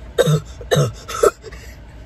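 A young woman's deliberately forced, fake cough: three harsh coughs in quick succession, about half a second apart, put on rather than from illness.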